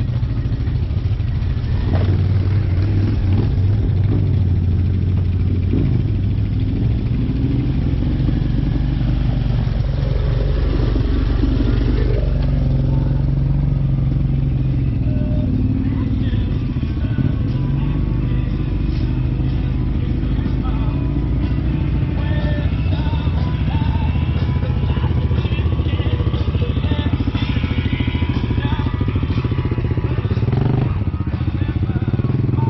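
ATV engines running steadily at low revs, the pitch rising and falling in places as the throttle changes.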